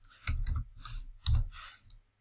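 Computer keyboard keys being typed: a handful of short, irregular key clicks.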